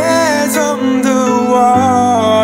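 Slow pop ballad: a singer holds a sliding, wavering sung line over steady sustained accompaniment chords.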